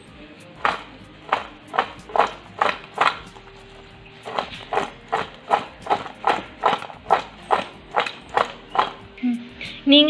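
Fried bondas being tossed in a bowl to coat them in the sprinkled spice powder: a rhythmic run of shaking strokes, about two a second, with a pause of about a second in the middle.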